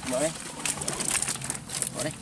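Live fish flapping and slapping against a mesh keep net and a plastic crate as the catch is poured out, a rapid, irregular patter of small wet slaps and clicks.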